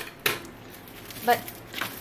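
A short rustle of clear plastic wrapping film being handled or cut, followed about a second later by a single spoken word.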